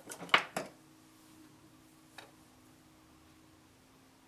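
A quick run of small hard clicks and knocks, then a single click about two seconds later, from a sculpting tool being picked up and handled at the bench, over a faint steady hum.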